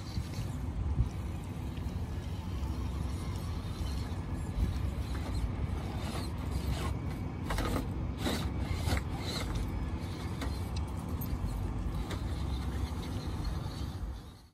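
Electric radio-controlled truck's motor and gear drivetrain running steadily as it crawls over a rock pile, with sharp clicks and knocks of tyres and rocks, most of them between about six and nine seconds in.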